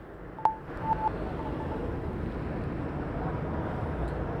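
A live outdoor microphone feed cutting back in after a dropout, the sign of a brief transmission fault. About half a second in there is a sharp click with a short beep, then a second short beep, followed by steady background noise.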